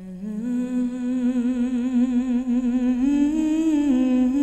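A solo voice humming a slow wordless melody in long held notes with vibrato, stepping up in pitch about three seconds in and falling back near the end.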